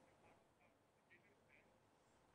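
Near silence, with four very faint short chirps about half a second apart.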